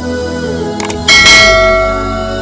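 Subscribe-button sound effects over background music: a short mouse click just under a second in, then a loud bell chime that rings on and slowly fades.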